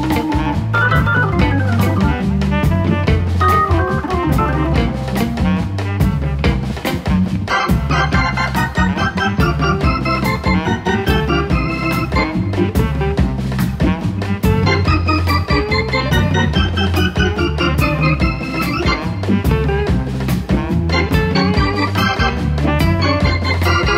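Blues instrumental: a Hammond organ solo over a bass line and a drum kit.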